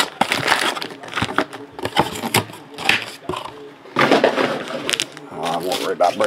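A cardboard trading-card box being torn open and crushed, with irregular crackles and snaps of cardboard and rasping tears about three seconds in and again about four seconds in.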